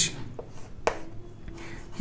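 Chalk writing on a chalkboard: a couple of short, sharp taps about half a second apart, with faint scratching between them.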